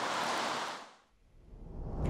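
Steady outdoor ambient hiss that fades out within the first second. A brief moment of silence follows, then a low rumble swells up.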